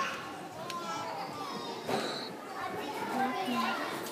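Several young children's voices at once, talking and calling out indistinctly in a large hall, with a single bump about two seconds in.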